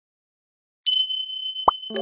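Edited-in intro sound effects: a high, bell-like chime rings out about a second in and slowly fades, and a short pop sounds just before the end. Music begins right at the close.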